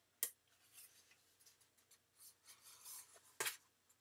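Cardstock being pushed in along its creases and collapsed by hand: faint rustling and rubbing of paper, with a short tap just after the start and a sharper crackle of the card near the end.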